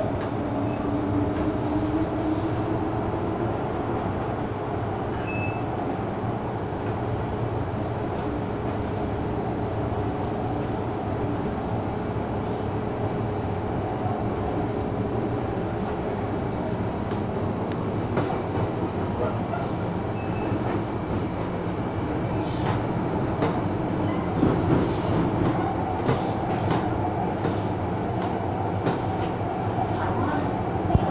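Interior running noise of a Hong Kong MTR M-Train (Metro-Cammell metro car) in motion: a steady rumble of wheels on rail with traction-motor hum, a motor whine rising in pitch about a second in. Wheel clicks and knocks come through in the last several seconds.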